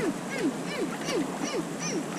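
A bird calling: a steady run of short falling notes, about three a second.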